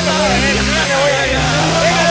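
Excited overlapping voices of a small group, with a long low held tone that rises, holds for about a second and drops away, followed by a second held tone, over a low rumbling background.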